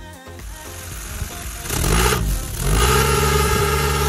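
Suzuki Swift hatchback's engine revving twice about two seconds in, its pitch rising and falling each time, then running steadily and louder through the exhaust. Background music fades out near the start.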